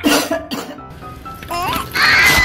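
A cartoon voice coughing, with light background music underneath.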